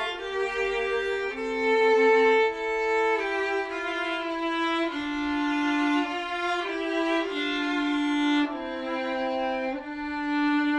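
Two violins playing a slow Celtic folk tune together in two-part harmony, each note held for about half a second to a second.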